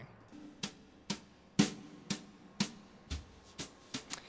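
A recorded jazz drum backing track playing back, quiet and sparse, with steady drum hits about twice a second.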